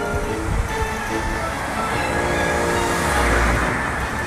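Background music with a car driving past, its road and engine noise swelling to a peak near the end and then dropping away.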